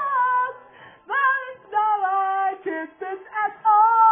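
Female voices singing a melody with long held notes and pitch slides, played from a television and picked up in the room.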